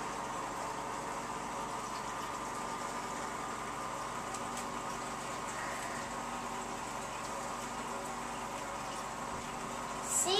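Aquarium equipment running: a steady hum and hiss, with air bubbling in the tank.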